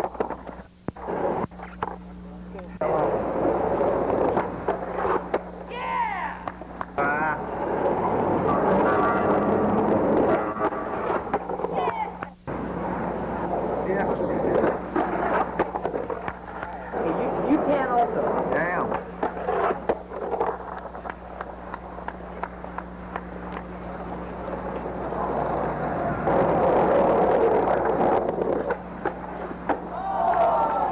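On-camera sound of old VHS skate footage: indistinct voices of people at the spot and sharp clacks of skateboards, over a steady electrical hum from the tape. The sound drops out for a moment about twelve seconds in, where the tape cuts between clips.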